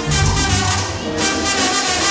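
Live salsa band playing a song, horns over bass and percussion.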